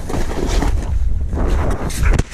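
Wind buffeting an action camera's microphone in a steady low rumble, with the hiss of a snowboard carving through powder snow.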